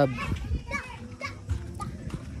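Children's voices and chatter in the background, faint and intermittent.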